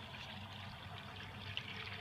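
Faint, steady running of water as the used jetting water is pumped back through the return hose and the ZipDrain tool into the cast iron overhead sewer.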